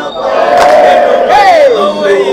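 A crowd of voices chanting a gwijo song together, unaccompanied. One long held note rises, then slides down in pitch near the end.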